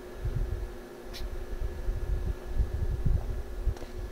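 Wind buffeting the microphone outdoors: an uneven low rumble that rises and falls in gusts, over a faint steady hum.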